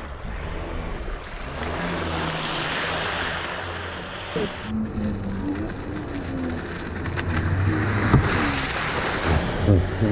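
Radio-controlled speedboat running fast across the river shallows, its motor and hull spray making a steady rushing hiss, with a couple of sharp knocks.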